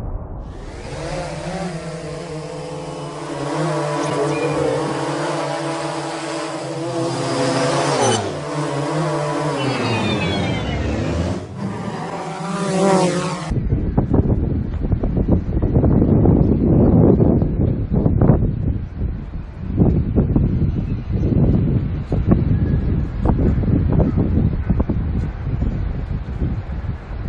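Quadcopter drone's motors and propellers whirring at a changing pitch, sliding down and back up about eight to twelve seconds in, then cutting off suddenly about thirteen seconds in. After that, gusty wind buffets a phone's microphone.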